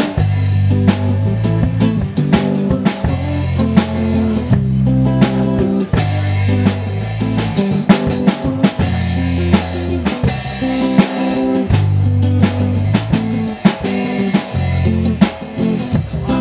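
Live electric jam-band music: electric guitar playing over a steady drum beat and bass line, with no singing.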